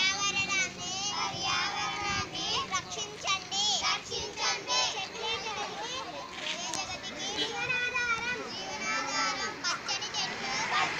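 A group of children's voices, high-pitched and overlapping, with several of them calling out at once throughout.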